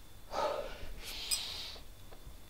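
A man snorts sharply through his nose, then draws a longer hissing breath in, with a small click partway through.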